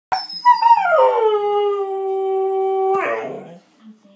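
Husky howling to demand a walk: one long call that drops in pitch over the first second, then holds steady, and breaks into a breathy rasp about three seconds in.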